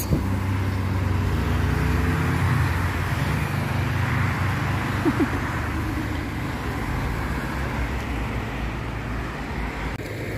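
Road traffic: a vehicle engine hums close by and fades over the first few seconds, while the tyre noise of cars passing on the road swells to its loudest around four seconds in.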